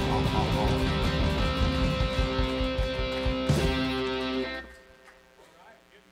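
A live band of electric guitar, acoustic guitar and bass guitar playing loudly on held chords, ending with a sharp final hit about three and a half seconds in that rings on until it is cut off just before five seconds.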